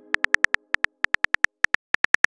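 Simulated phone keyboard clicks, one short bright tick per letter typed, coming in quick runs of about seven to ten a second with brief gaps.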